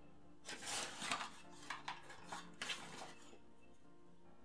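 A small cardboard product box being opened and its contents handled, with several short scraping and rustling sounds between about half a second and three seconds in. Faint background music runs underneath.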